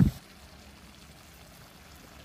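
A faint, steady hiss after the last of a spoken word fades out.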